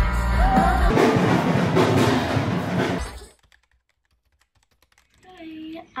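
Live rock band with a singer, as heard from the crowd at an outdoor festival stage; it cuts off suddenly about three seconds in.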